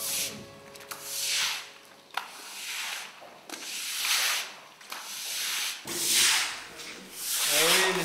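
Push broom with stiff bristles sweeping standing water across a wet concrete floor, long swishing strokes about once a second. A man starts shouting near the end.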